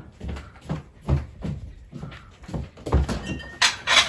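Footsteps on a hard floor, a few a second, then sharp clicks and clatter near the end as a glass-fronted wooden cupboard is opened.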